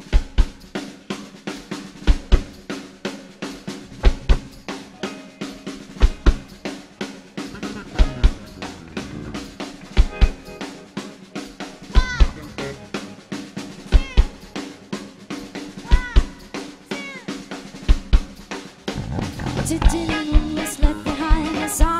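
Live band playing an instrumental intro: a drum kit keeps a steady beat of bass drum, snare and cymbals under guitars and banjo. Near the end the band fills out as the song proper begins.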